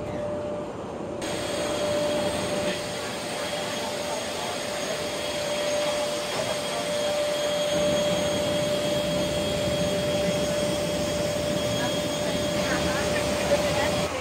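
Steady rushing drone with a steady whine from a parked jet airliner, heard at its boarding door. The noise grows louder and brighter about a second in.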